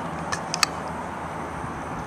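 Steady outdoor background noise, with a few light clicks about half a second in from a hand working the pan and tilt lock levers on a video tripod's head.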